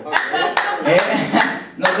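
Hand claps: five sharp claps about 0.4 s apart, with voices between them.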